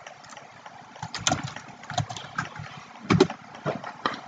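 Irregular clicks of computer keyboard keys typing a file name, over a faint steady background hum.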